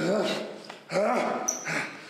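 Two strained, wordless yells from a man, one at the start and one about a second in, each rising and then falling in pitch.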